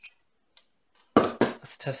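A single light metallic click at the very start as a knife and ferro rod are handled, then near-quiet until a man starts speaking a little over a second in.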